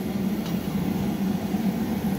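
Gas-fired glass furnace burner running with a steady, even roar over a low hum.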